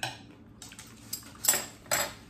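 Metal fork and knife clinking against a ceramic plate: several short, sharp clinks as the cutlery is set down, the loudest about a second and a half in.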